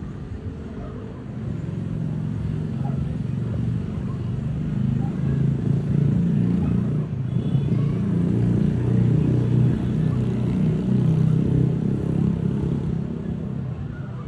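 A motor vehicle's engine rumbling close by. It grows louder from about a second in, is loudest through the middle and eases off near the end.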